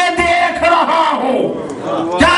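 Loud raised voices calling out, a crowd's voices among them, in a large hall.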